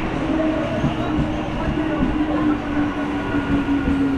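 EMU local train moving slowly alongside the platform: a steady hum over a continuous low rumble with light irregular clatter from the wheels.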